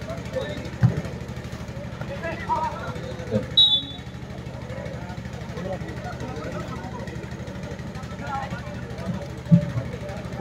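Volleyball rally: a couple of sharp ball hits in the first second, then a short high referee's whistle about three and a half seconds in. Spectators' voices chatter throughout over a steady low mechanical hum.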